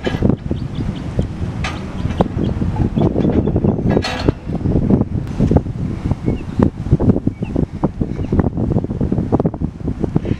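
Gusty wind buffeting the microphone: a loud, uneven rumble that rises and falls.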